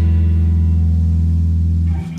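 A live band's final chord, led by electric guitar, held and ringing with a deep low note. It cuts off sharply at the end: the close of a song.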